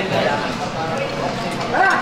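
Indistinct chatter of several voices in a dining hall, with light clinks of a knife and fork on a plate.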